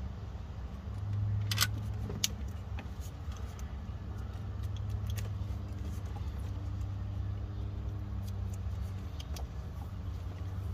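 Electrical tape being unrolled and wrapped around a live battery cable's ring terminal, with scattered clicks and crackles of the tape and metal lug, the loudest about one and a half and two seconds in. A steady low hum runs underneath.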